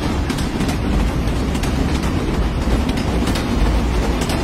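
Passenger train running, heard from inside a sleeper coach: a steady low rumble with the clatter of the wheels over rail joints.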